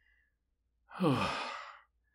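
A man's voiced sigh of relief about a second in, breathy and falling steadily in pitch, lasting under a second, after an arrow has been pulled from a wound.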